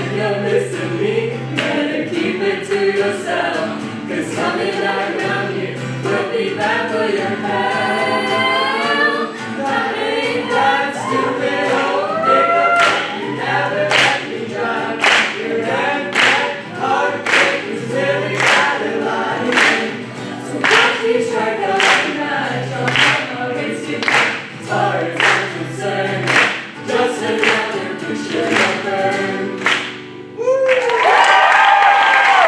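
A small group of young voices singing together, accompanied by acoustic guitar. From about twelve seconds in, steady hand claps about once a second keep the beat until near the end.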